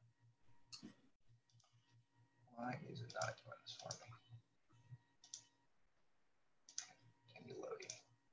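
Faint computer mouse and keyboard clicks, with a few seconds of low, muttered speech in the middle and again near the end.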